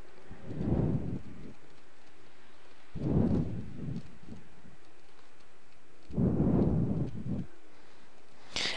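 Faint steady hiss with three soft, low rumbles of noise, each about a second long, a few seconds apart.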